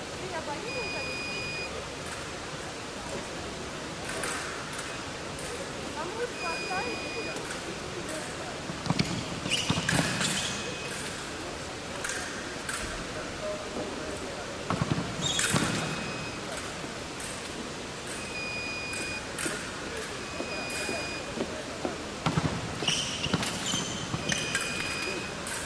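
Sabre fencing hall sounds: electronic scoring machines give short steady beeps about once every two to three seconds, and the fencers' feet strike the metal piste in sharp stamps and knocks, loudest in a few clusters during the attacks.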